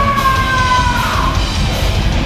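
Heavy metal band playing live, recorded from the audience: distorted guitars, bass and drums, with a long held high note that slides slightly down and breaks off just over a second in.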